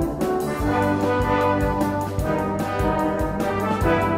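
Brass-led instrumental music playing a hymn tune with a steady beat: the accompaniment for a sung-along Salvation Army song.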